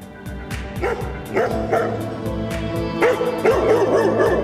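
A dog barking repeatedly in short calls over background music with a steady beat.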